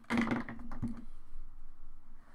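Handling noise at a paper-covered desk: a quick flurry of clicks and rustles in the first second as a forearm brushes across a sheet of paper and a marker is picked up, then a fainter scratchy hiss.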